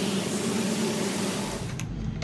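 Steady rushing hiss of a splashing stone fountain. Near the end come a few sharp metallic clicks of a steel doorknob being handled.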